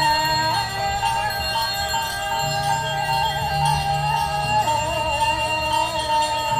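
Balinese ceremonial music: a wavering, ornamented melody over low sustained tones that shift every couple of seconds, with a steady ringing like bells.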